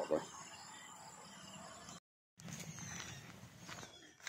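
Faint rural outdoor background noise after the tail of a spoken word, with a brief total dropout a little after halfway, then faint outdoor noise again.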